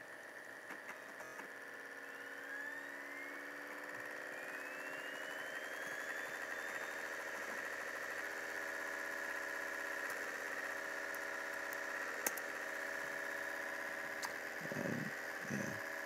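A MacBook 2,1 whirring steadily as it boots, its fan and drives humming and growing slowly louder, with a whine that rises in pitch a few seconds in, like a disc or fan spinning up. A single faint click comes near the end.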